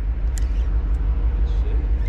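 Boat engine idling, a steady low rumble, with one sharp click about a third of a second in from the spinning reel.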